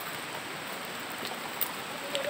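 Steady hiss of falling rain, with a couple of faint ticks about halfway through and a little later.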